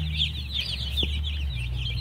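A flock of about two hundred two-day-old chicks peeping continuously, many rapid, overlapping high peeps each second, over a steady low hum.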